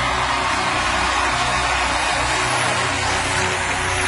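Studio audience applauding and cheering steadily, with low music still sounding underneath.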